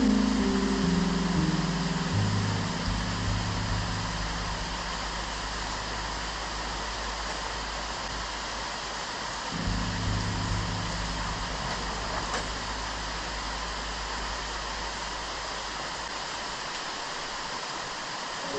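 Steady rain falling on forest foliage, an even hiss throughout. Soft low sustained music notes sound underneath: a few falling notes at the start, then held bass notes that fade and swell again about ten seconds in.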